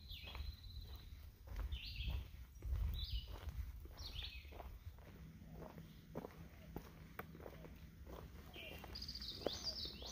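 Footsteps on a dirt forest trail at a steady walking pace, with a songbird singing several short chirping phrases in the background.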